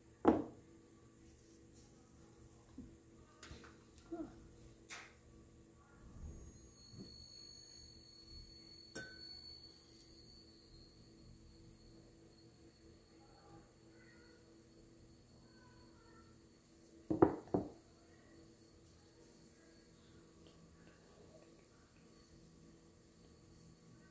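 Small metal pottery tools and a clay piece knocking and clicking against a worktable during handwork: a sharp knock at the start, a few light taps over the next several seconds, and a louder cluster of knocks about two thirds of the way through, over a steady low room hum.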